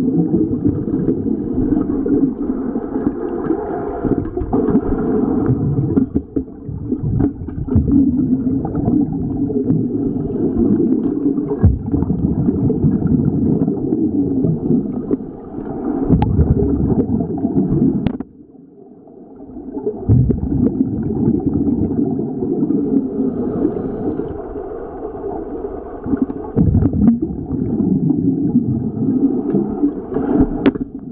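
Muffled underwater noise: water moving and gurgling around a submerged camera, a continuous low rumble with a brief lull about eighteen seconds in.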